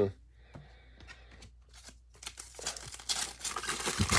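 A foil trading-card pack wrapper crinkling and being torn open by hand. The crackle starts about two seconds in and grows louder toward the end.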